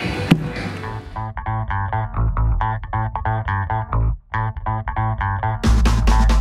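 Background music: a repeated riff of short plucked notes over a bass line, with a brief break about four seconds in. A fuller band with drums comes in near the end. For about the first second the room noise of a busy restaurant is still heard.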